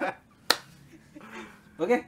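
A single sharp snap about half a second in, with voices just before it and a spoken "oke" near the end.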